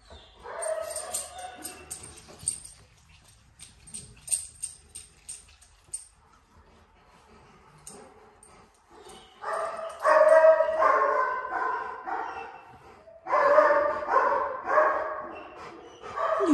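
A Rottweiler making drawn-out vocal calls: a short one near the start, then two long ones in the second half. Light clicking runs through the first few seconds.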